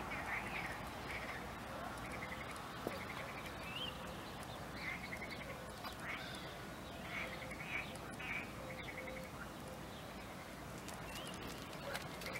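Frogs calling faintly from a stream: short rattling croaks repeated several times, with an occasional high bird chirp.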